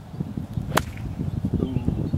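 A golf club striking a ball in a full swing: one sharp crack a little under a second in.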